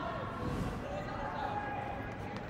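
Open-air stadium ambience: faint, distant voices and shouts carrying across a sparsely filled ground over a steady background wash.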